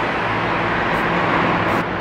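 Steady road-traffic noise with a faint low hum.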